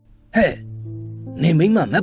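Speech in Burmese over steady background music with held chords: a short utterance about a third of a second in, then more speech from about halfway through.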